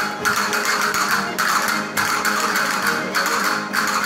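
Spanish folk string band of guitars and other plucked instruments strumming a lively rhythm, with strums landing about every half second.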